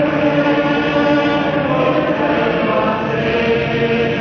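A large congregation singing a slow hymn together in long, held notes. The sound is dull and capped at the top, as from an old cassette tape recording.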